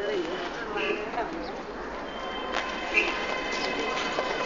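Busy street ambience: indistinct voices of people talking over a steady background of noise, with a few thin sustained high tones and scattered clicks, one sharper click about three seconds in.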